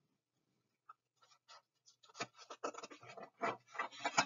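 Near silence, then from about two seconds in a run of faint, irregular clicks and scratchy rustles.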